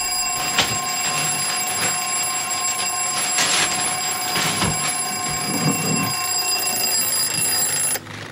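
An alarm clock bell ringing continuously and loudly, then cutting off suddenly.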